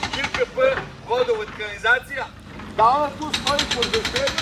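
A man talking, in short phrases with brief pauses; no other sound stands out.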